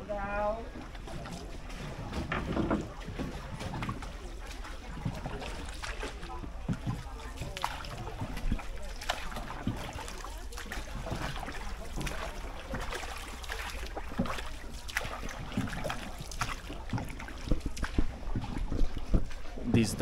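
A wooden paddle dipping and pulling through shallow canal water beside a small wooden rowboat, with irregular splashes and light knocks.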